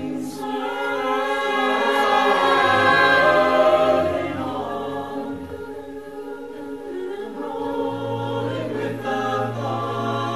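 Mixed a cappella choir singing held chords with no instruments, over a low sung bass line. The sound swells to its loudest about three to four seconds in, softens, then builds again near the end.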